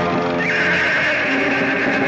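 A horse neighs, one long call starting about half a second in, over an orchestral film score.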